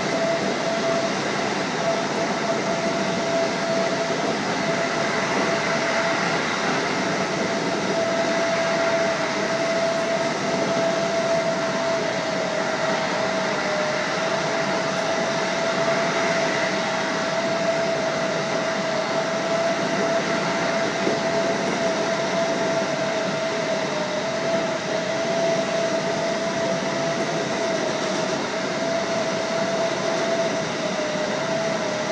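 JR Hokkaido 711 series electric multiple unit running at steady speed, heard from inside the driver's cab: a continuous rumble of wheels and running gear with a constant whine over it, the whine dipping slightly in pitch a little before halfway through.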